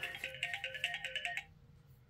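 Electronic reminder alert tone: a quick, repeating melody of short beeping notes that cuts off about one and a half seconds in.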